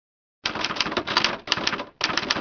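Typewriter sound effect: a fast run of key strikes, several a second, starting about half a second in, with a brief break near the middle. It accompanies a title typing itself onto the screen.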